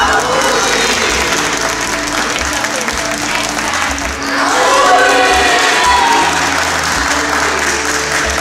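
A group of people clapping and cheering over background Christmas music, with voices calling out about halfway through.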